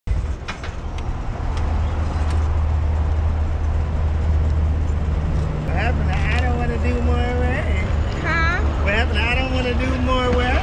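Motorcycle engine idling with a steady low rumble. About six seconds in, a voice with long held notes, like singing, starts over it.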